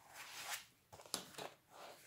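Paper rustling as a page of a spiral-bound colouring book is turned by hand, with a couple of faint ticks a little past a second in.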